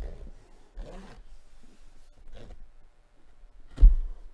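A cardboard jersey box being opened by hand: two short rasps of packing tape being slit and torn, then a loud thump near the end as the box or board is knocked.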